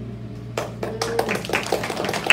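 A few children clapping unevenly, with sharp scattered claps in a small room.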